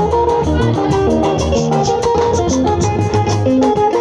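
Live Ika band music: electric guitar picking a quick run of short melodic notes over bass guitar and a steady percussion beat, played loud.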